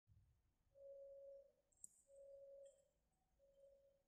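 Faint warning tone beeping three times, each beep about half a second long and repeating about every 1.3 seconds, in the manner of a railway signalling or crossing alarm. A single sharp click sounds just under two seconds in.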